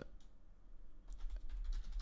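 Typing on a computer keyboard: a run of quick keystroke clicks that begins about a second in, after a quieter first second.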